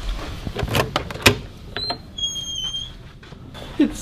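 A door being handled and opened: several sharp clicks and knocks, then a short high-pitched squeal about two seconds in.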